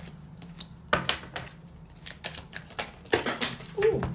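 Tarot cards being handled and pulled from the deck on a table: a run of sharp, irregular clicks and taps.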